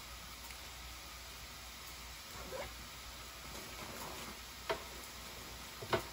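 Faint rummaging in a leather handbag: a few soft rustles and then two sharp small clicks, the louder one near the end, over a steady hiss.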